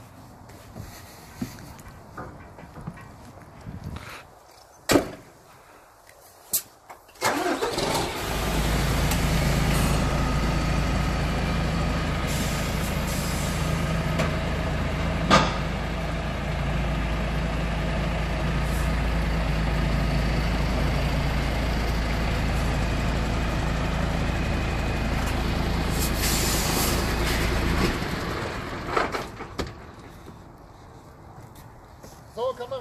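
A MAN truck's diesel engine is started about seven seconds in, after a few sharp thumps, then runs steadily as the truck pulls forward away from its uncoupled tandem trailer. A single sharp knock comes midway, and the engine sound dies away near the end.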